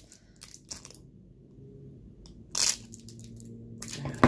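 Plastic snack-bar wrapper crinkling in the hands as someone struggles to open it: a few short crackles, then one louder crinkle about two and a half seconds in.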